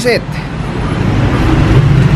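A steady rushing noise with a low rumble, growing louder over the first second and a half, with a faint thin high whine near the end.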